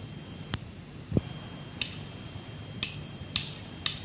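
Scattered sharp clicks, about five in four seconds, with one duller thump about a second in, over steady tape hiss and a faint high whine from an old cassette live recording.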